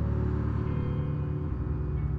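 Boat engine running with a low, steady rumble, with faint sustained tones over it.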